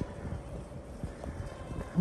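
Footsteps on a paved lane as the person filming walks, soft irregular low knocks over a faint steady background hum.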